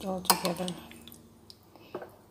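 A metal spoon stirring yogurt parfait in a ceramic bowl, clinking against the bowl: one sharp clink near the start, then a few lighter ones.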